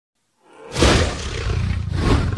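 A dragon-roar sound effect that starts suddenly and loud less than a second in and carries on.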